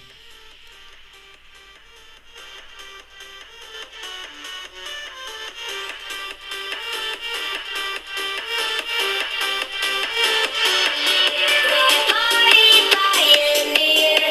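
Electronic dance track playing through a Nokia 6234 phone's built-in loudspeakers, starting at minimum volume and growing steadily louder as the volume is turned up. The sound is thin, with no deep bass.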